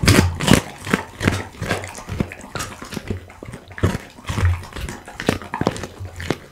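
Pit bull chewing a raw duck neck close to a microphone: a run of irregular crunches as the neck bones break, about two or three a second, some with a low thump.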